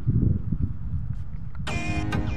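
A low rumble of outdoor noise for about a second and a half, then background music comes in near the end.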